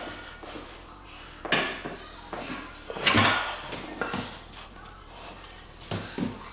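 Loaded barbell back squats with iron plates: the bar and plates rattle briefly on the reps, two louder ones about a second and a half and three seconds in.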